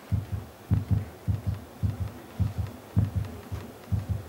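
Low double thumps in a steady lub-dub rhythm, like a heartbeat, about seven pairs a little over half a second apart, starting and stopping suddenly.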